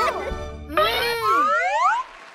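Cartoon sound effect of several sliding tones swooping up and down, like a boing, over children's background music, starting a little under a second in and cutting off suddenly at the end.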